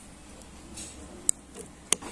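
Predator Mahameru PCP bullpup air rifle firing at a metal silhouette target: two sharp cracks a little over half a second apart, the shot and the pellet striking the target.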